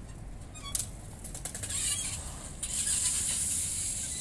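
Bicycle rolling down a concrete skatepark ramp and across the flat: a sharp click about three-quarters of a second in, then a high-pitched hiss of tyres and coasting wheel that gets louder in the second half.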